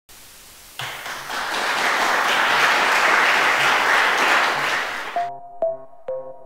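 Audience applause that swells about a second in, holds, then fades. Near the end it gives way to a short electronic music jingle with crisp pitched notes.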